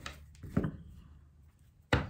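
Tarot cards and deck handled on a tabletop: a soft knock about half a second in and a sharp tap just before the end.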